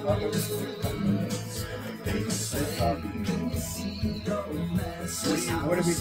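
A band's recorded mix playing back over studio monitor speakers, music running throughout.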